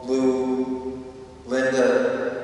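A single voice chanting in long held notes, each starting strong and fading. A new note begins about a second and a half in.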